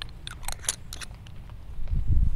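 Plastic cap being screwed onto a glass ink bottle: a quick run of small clicks and scrapes from the threads in the first second. A loud low rumble starts near the end.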